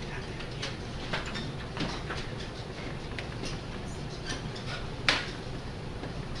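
Marker squeaking in short, irregular strokes as it writes on chart paper, over a steady low room hum; a sharp click about five seconds in.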